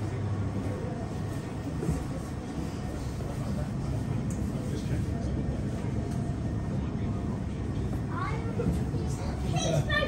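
Indistinct voices of other passengers over a steady low rumble inside an enclosed glass observation-wheel capsule, with a voice rising in pitch from about eight seconds in.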